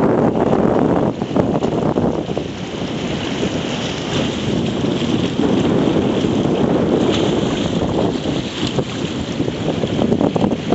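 Wind buffeting the microphone, with small waves washing and splashing against rocks at the water's edge; the noise swells and dips unevenly.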